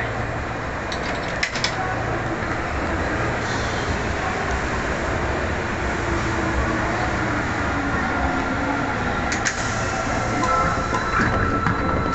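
Osaka Metro 2500 series subway train standing at an underground platform: a steady low hum and noise from the train, with a few sharp clicks about one and a half seconds in. A steady tone comes in about ten seconds in.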